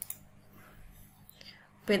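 A single computer-mouse click near the start as the 'Next' button is pressed on a web form, followed by faint room tone; a woman starts speaking near the end.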